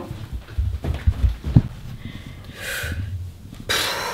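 Low thumps and shuffling of a person moving about, a short hiss a little before three seconds in, then a sharp intake of breath near the end.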